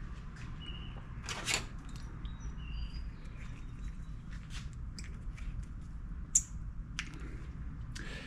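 Hands handling a small-engine spark plug wire and its boot on an ignition coil: a brief rustle early on and a few light clicks near the end, over a low steady background with faint high chirps.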